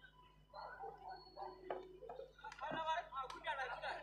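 People talking close to the microphone, with a few brief clicks in between.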